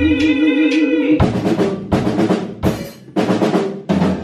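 Drum kit playing a break in a live band rehearsal: about five heavy hits, roughly two thirds of a second apart. They follow a held note with vibrato that stops about a second in.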